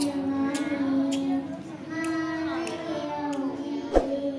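A young girl reciting the Qur'an in the melodic tilawah style into a microphone, holding long wavering notes with a short pause for breath about halfway through. A sharp thump right at the end.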